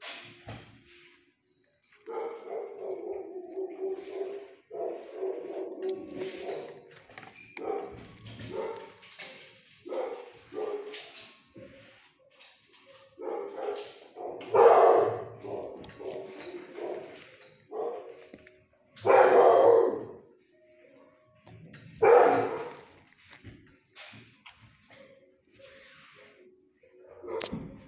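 Kennel dogs barking: a run of barking, with three louder barks in the second half.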